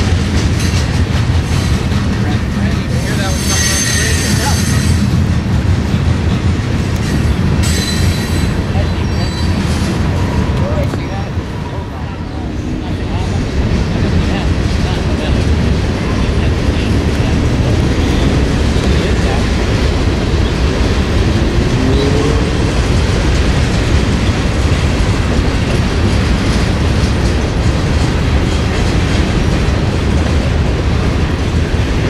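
Freight cars of a Norfolk Southern train rolling past: a steady rumble and clatter of steel wheels on rail. Two short high-pitched wheel squeals ring out in the first ten seconds.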